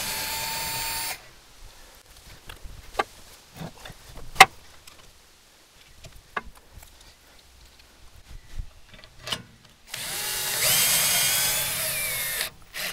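Power drill running on the tracker's frame bolts: a short run of about a second at the start, then a longer run of about two seconds near the end that winds up in pitch as it starts. A few light metal clicks and knocks come in between.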